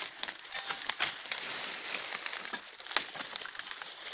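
Dry oil palm fronds and debris rustling and crackling, with scattered sharp clicks and snaps, the strongest about a second apart, as fronds are pruned and handled.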